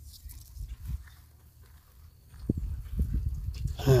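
Low rumbling handling noise with a few soft knocks as the handheld camera is moved, louder from about halfway through, ending in a sigh.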